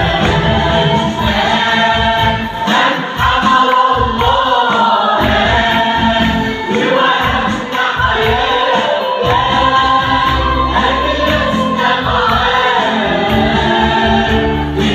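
Mixed choir of men and women singing an Arabic Christian hymn together.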